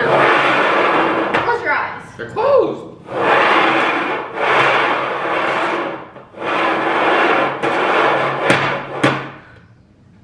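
Two upturned bowls being slid and shuffled around on a wooden tabletop: long scraping rubs in three stretches, with a couple of sharp knocks near the end as they bump.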